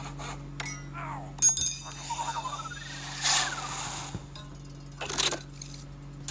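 Animated logo sound effects: sharp clicks and clinks, the loudest about a second and a half in, then a rising, chirping whistle near the middle and a short burst near the end, over a steady low hum.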